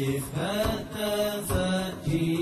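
Wordless chanted vocal music with held notes that shift in pitch every half second or so, and a few sharp beats, serving as the backing track of a TV promo.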